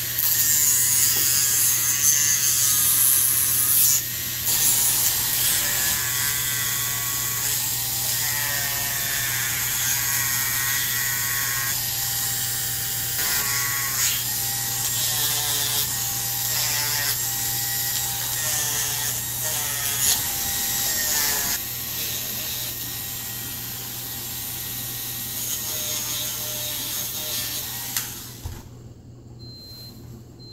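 Dremel-type rotary tool grinding down a blue-and-gold macaw's beak to even out a scissor beak. The motor's whine wavers in pitch as it bears on the beak, and it stops about two seconds before the end.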